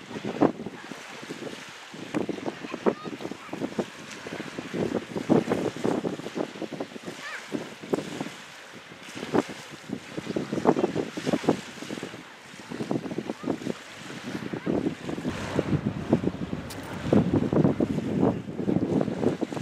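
Wind buffeting the microphone in irregular gusts, rising and falling in strength.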